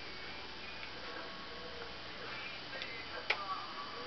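Clockwork wind-up mechanism of a c.1910 Gunthermann tinplate motorcycle toy running, giving a steady faint ticking, with one sharp click a little over three seconds in.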